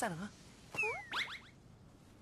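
A short, high-pitched cartoon squeak about a second in: a brief falling whistle followed by several quick upward-sweeping chirps.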